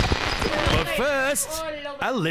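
Mashup track changeover: the full music with heavy bass drops away into a short rough stretch with a few thuds. About a second in, a sampled voice with arching, rising-and-falling pitch comes in.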